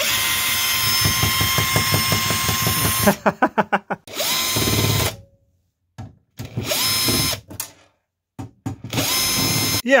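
Bosch GSR 18-2-LI 18 V cordless drill/driver backing screws out of a sheet-metal case lid: one long run of about three seconds, then three shorter runs of about a second each, the motor winding down at the end of each. A short laugh follows the first run.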